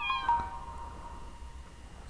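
A single short cat meow as the music fades out, followed by quiet.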